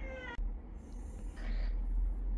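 Domestic cat giving one short, slightly falling meow right at the start, cut off abruptly.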